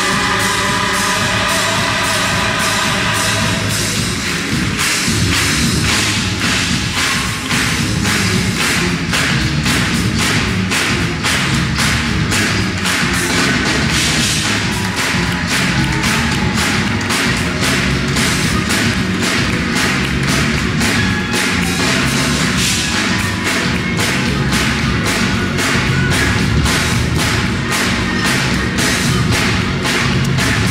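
Gospel choir and band music: a held chord at first, then from about four seconds in a fast, driving beat of drum kit and rhythmic hand claps.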